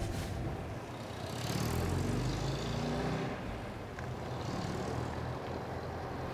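Vehicle engine running while driving, heard from inside the cab as a steady low drone that swells a little for a couple of seconds partway through.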